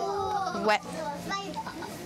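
A group of young children exclaiming together in surprise, a drawn-out "oh!" followed by a "yeah!", their voices overlapping.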